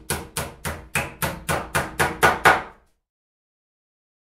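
Hammering sound effect: a regular run of hammer strikes, about four a second, growing louder toward the end and stopping abruptly just under three seconds in.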